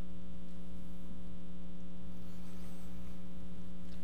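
Steady electrical mains hum with a buzzy stack of evenly spaced overtones, holding at one even level.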